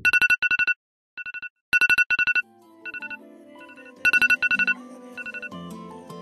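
Smartphone alert tone going off: clusters of rapid high beeps, repeating in short bursts with gaps between them. Soft music comes in underneath a little before halfway.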